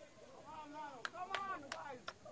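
Players' voices calling out on the pitch, faint and distant, with three sharp knocks in quick succession about a second in and another right at the end.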